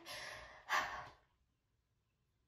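A woman's two breathy, distressed sighs: a softer, longer one, then a shorter, louder one about three-quarters of a second in.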